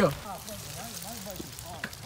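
Bicycle tyres rolling over a wet, muddy dirt trail, a steady noise, with faint voices of other riders in the background.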